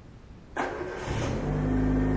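A car engine starts about half a second in and runs, getting louder toward the end.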